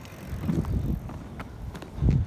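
Roller skate wheels rolling over an asphalt trail: a low, uneven rumble with a few light clicks in the second half.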